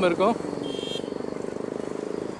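A nearby motor vehicle's engine running with a steady, fast, even pulse in street traffic, with a brief thin high tone just after the start.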